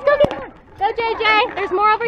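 A young child's high-pitched voice babbling without words: a short sound at the start, then a longer run of calls through the second half. A couple of short sharp clicks come about a quarter second in.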